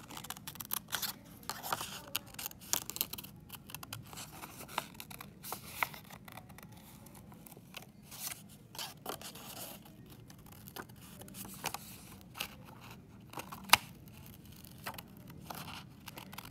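Scissors cutting paper: a run of irregular snips with light paper rustling between them, and one louder snip near the end.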